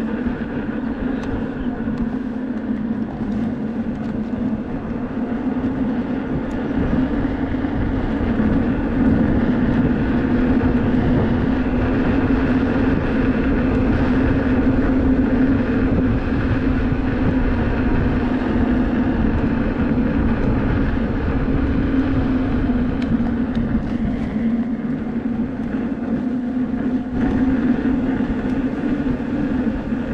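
Electric unicycle riding on asphalt: wind rushing over the microphone, with the steady hum of the hub motor and tyre underneath. It gets somewhat louder through the middle stretch.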